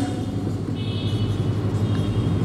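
Steady low background rumble and hum. From about a second in, a faint high-pitched squeak lasts about a second, as a marker writes on a whiteboard.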